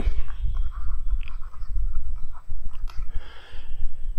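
Steady low background rumble with a few faint clicks, and a soft breath-like hiss about three seconds in.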